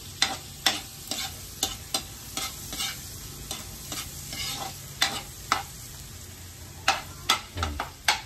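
Garlic sizzling in a pan as a metal spoon stirs it, with irregular clinks and scrapes of the spoon against the pan.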